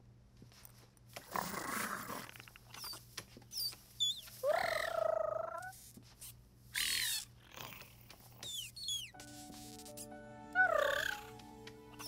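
Several squealing cries with rising and falling pitch from a baby Tyrannosaurus rex, a film creature sound effect, mixed with short rustles. Soft sustained music notes come in about nine seconds in.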